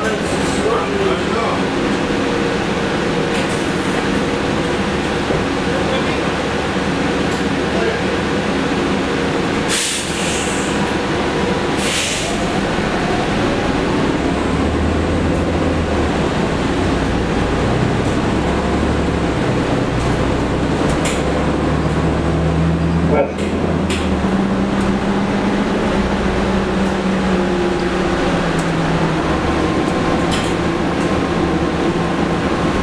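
Interior ride sound of a New Flyer XN40 Xcelsior CNG bus under way: its Cummins ISL-G inline-six natural-gas engine and ZF Ecolife transmission hum steadily, the engine tone shifting and climbing in pitch about halfway through as the bus pulls away and changes gear. Two short hisses of air come a couple of seconds apart near ten seconds in.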